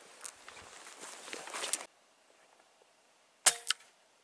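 Footsteps swishing through grass, cut off abruptly about two seconds in; near the end a single sharp rifle shot crack, followed about a quarter-second later by a second, fainter crack.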